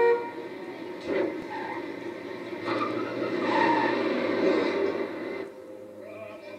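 City street traffic: a steady wash of passing-vehicle noise, with a car horn that cuts off just after the start and another horn-like tone about three and a half seconds in. The street noise drops away near the end.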